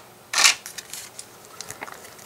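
Paper LEGO instruction booklet being picked up and handled: a short rustle about half a second in, then faint small clicks and rubbing.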